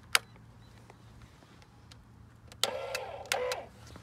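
A rocker switch clicks on an electric trailer tongue jack, then the jack's motor runs in two short bursts of a little under a second in total, ending abruptly.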